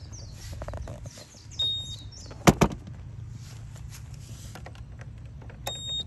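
A short high electronic beep, then two sharp loud knocks as the Honda Super Cub C125's hinged seat is pushed down and latched, and near the end two more short beeps from the bike's electronic alarm system, over a low steady rumble.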